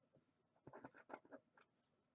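Faint scraping and light clicks of a small red counting token being set down and slid into place on a laminated card, a quick cluster of small strokes about a second in.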